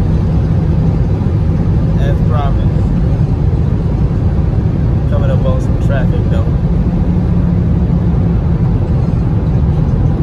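Heard from inside the cabin, the 2020 Dodge Scat Pack's 6.4-litre HEMI V8 runs with loud tyre and wind noise as a steady low rumble, the car slowing from about 157 mph off a top-speed run. A faint voice comes in briefly about two seconds in and again around five to six seconds.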